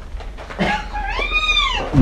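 A single high-pitched squealing call, rising and then falling in pitch over nearly a second, with a shorter call just before it.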